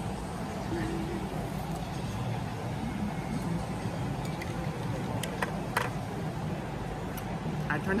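Steady hum of a large dining room, with a brief murmur of voices. A few sharp clinks of a metal fork on a plate come between five and six seconds in.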